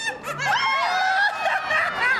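A person laughing in a high voice, the pitch bending up and down.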